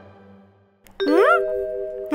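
Cartoon sound effects: a bright chime rings out suddenly about a second in and holds, with a short pitch glide that rises and falls over it, and a second such glide at the very end.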